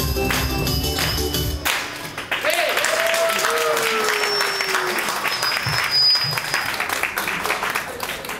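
A pop backing track stops abruptly under two seconds in. Audience applause follows, with a few short cheering voices over it.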